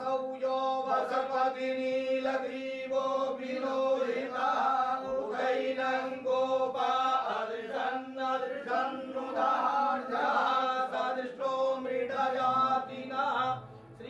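Priests chanting Sanskrit Vedic mantras of a Shiva puja, a continuous recitation held on one steady reciting pitch.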